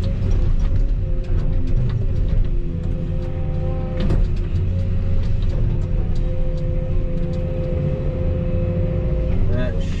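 Volvo EC220E excavator's diesel engine and hydraulics working under load, heard from inside the cab, with a steady hydraulic whine over the engine rumble as the bucket digs out a stump and the machine swings. Scattered knocks and scrapes from the bucket, with one sharp knock about four seconds in.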